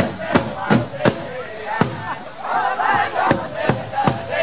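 Drum music with chanting voices: a drum struck in a steady beat about three times a second, thinning out in the middle, and a burst of high, wavering group chanting about two and a half seconds in.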